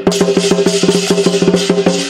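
Lion dance percussion: fast, even drum strokes, about ten a second, over a steady ringing tone. The beating breaks off just before the end and the ring fades.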